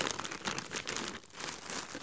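Plastic packaging crinkling: a shirt sealed in a clear plastic bag being slid out of a poly mailer bag and handled, in faint, irregular crackles.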